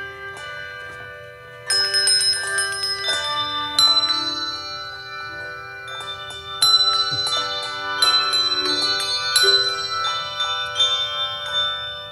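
A handbell choir playing a melody. The bells are struck in turn, and each note rings on and overlaps the next. It starts softer, with a louder group of bells coming in about two seconds in.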